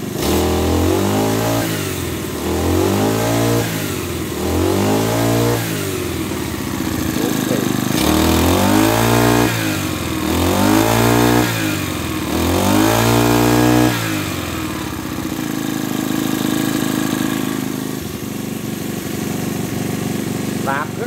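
Robin 427 27cc four-stroke brush cutter engine revved six times, in two sets of three, each a rise and fall in pitch, then running steadily at a lower speed for the last six seconds. It runs very smoothly.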